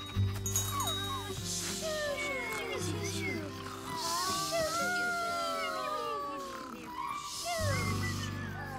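Cartoon night-time soundscape: many short overlapping chirping and whistling animal calls, rising and falling, over soft sustained background music.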